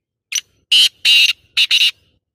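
Black francolin (kala teetar) calling: a harsh, grating phrase of five notes. It opens with a short note, then two longer notes, then two quick notes, about a second and a half in all.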